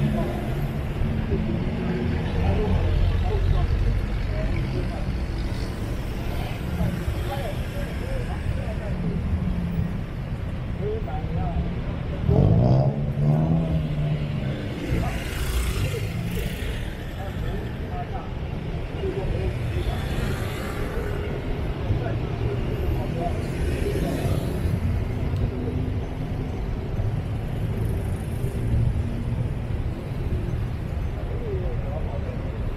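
Road traffic at a busy intersection: cars and motorbikes drive past with a steady engine rumble. About twelve seconds in, a nearby engine revs up with rising pitch, the loudest moment.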